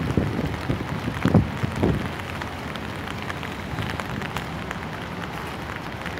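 Steady hiss and rumble of city street traffic, with a few louder swells from passing vehicles in the first two seconds.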